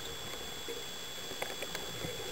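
Underwater sound through a camera housing: a steady hiss with scattered faint clicks and crackles, a few of them about halfway through and near the end.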